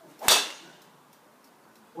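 Golf driver, a custom-built Yonex, whooshing through the swing and striking a golf ball once with a sharp crack about a third of a second in, the sound fading quickly afterwards.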